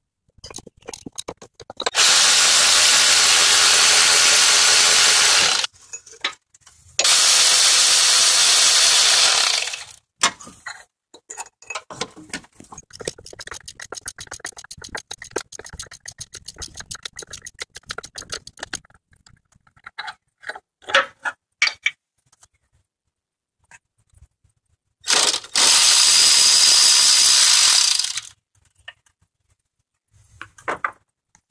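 Electric impact driver running in three bursts of about three seconds each, undoing the side engine mount bolts. Between the bursts, a ratchet wrench clicks rapidly for several seconds, with loose metal clinks around it.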